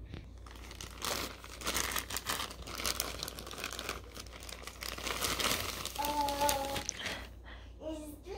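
Plastic poly mailer bag being pulled open by hand and its contents drawn out: a continuous run of thin-plastic crinkling and rustling. A brief voice sound comes about six seconds in.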